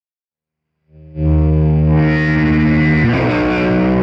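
Fender Stratocaster played through an overdriven tube amp: a low note, with the fretting hand off the neck, is struck about a second in and left ringing. From about three seconds further notes come in over it, some gliding in pitch.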